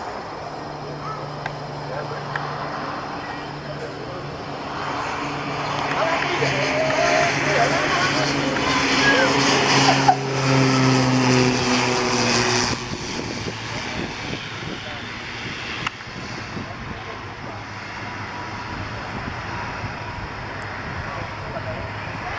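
Beechcraft King Air C90's twin PT6A turboprops and propellers on landing: a steady low propeller drone with a rushing whine. It grows louder as the aircraft comes down onto the runway and rolls past, then drops off sharply about thirteen seconds in, leaving a fainter engine sound as it rolls away.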